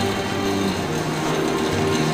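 Soft background music with a few held tones, over a steady hiss of room noise.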